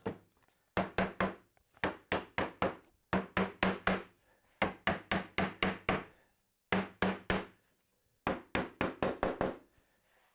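Mallet striking a fir rail to drive it down onto glued wooden dowels. The blows come in quick runs of about four a second, two to six at a time, with short pauses between runs.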